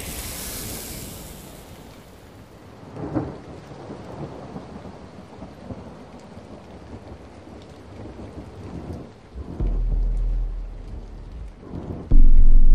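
Thunderstorm sound effect: a steady hiss of rain, with a roll of thunder about three seconds in and a louder, low rumble of thunder starting about nine and a half seconds in that lasts about two seconds.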